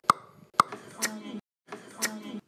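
Two sharp pops close together, followed by short voice-like sounds whose pitch bends up and down.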